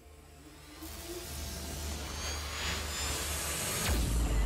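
Logo-animation sound effect: a whoosh of noise over a low rumble, building for about three seconds and ending in a sharp hit just before the end.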